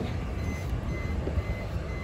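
A faint electronic beeper sounding a run of short, evenly spaced high beeps over a low background rumble.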